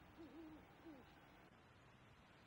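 Faint owl hooting: a wavering hoot, then a shorter falling hoot about a second in.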